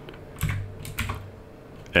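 A few separate keystrokes on a computer keyboard as a line of code is typed.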